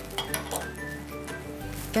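A few light clinks of metal against glass, over soft background music.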